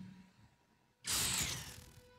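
Electricity-buzz sound effect from an animated show: a superpower transforming an object in the girl's hand. It starts suddenly about a second in as a loud crackling hiss and fades over about a second.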